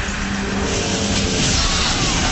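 Loud, steady rushing and crackling sound effect of a supernatural electric energy beam pouring out of a machine, with a low humming tone underneath.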